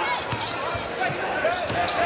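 A basketball being dribbled on a hardwood court in a large arena, with voices in the background.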